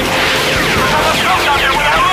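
Film dogfight soundtrack: fighter-jet roar and action sound effects mixed with score music, loud and continuous, with sweeping changes in pitch.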